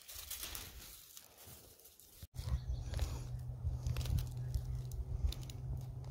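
Faint rustling and crackling of grass and dry leaf litter being handled close to the microphone. A sudden break comes a little after two seconds in, after which a steady low rumble runs under scattered small crackles.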